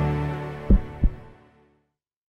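Intro logo music fading out, followed by two low, heartbeat-style thumps about a third of a second apart.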